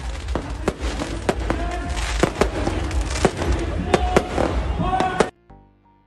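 Aerial fireworks going off: a rapid, irregular run of sharp bangs and crackles over a steady rumble, cutting off suddenly about five seconds in.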